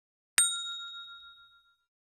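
A single bright bell ding sound effect, the notification-bell chime of a subscribe-button animation: struck once about half a second in, then ringing away over about a second and a half.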